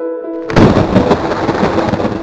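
Electronic keyboard chords, joined about half a second in by a sudden loud thunderclap that rumbles and fades away over the music.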